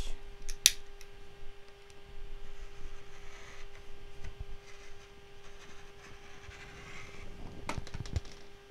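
Rotary cutter rolling through fabric along an acrylic ruler on a cutting mat: soft scraping cutting strokes, with a sharp click about a second in and a few clicks near the end as the cutter is put down.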